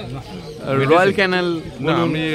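Speech: a person talking close by, with a pitch that rises and falls. It was not picked up by the recogniser.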